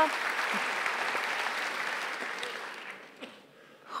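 Audience applause in a theatre hall, dying away about three seconds in.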